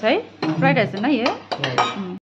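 Metal spoons and forks clinking against ceramic plates and glassware, with a few sharp clinks close together near the end, under people's voices.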